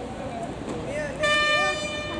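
Race start signal: a loud, steady horn-like beep that sounds once, a little over a second in, and lasts about half a second, sending sprinters out of their blocks. Voices murmur around it.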